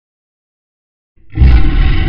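Silence, then about a second in a loud lion roar sound effect begins, heavy in the low end.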